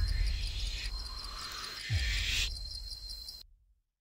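Jungle ambience of crickets chirping in a fast, even pulse, with a deep thud that drops in pitch about two seconds in. The whole track cuts off suddenly near the end.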